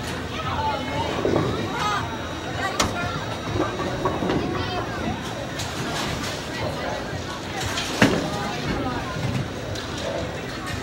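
Bowling alley din: background voices of other bowlers over a constant low rumble. One loud, sharp clack sounds about eight seconds in.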